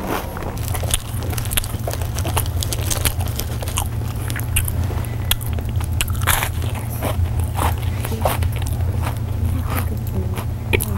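Loud crunchy chewing of a crisp snack: irregular crunches, several a second, over a steady low hum.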